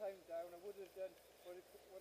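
Faint voices talking quietly, softer than the commentary around them, with a short lull a little past the middle.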